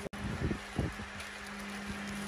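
Steady low hum over faint background noise, with two dull low thumps about half a second and just under a second in.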